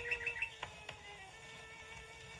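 A nightingale singing a quick run of short repeated high notes over a held cello note; the bird's run stops about half a second in while the cello note sustains.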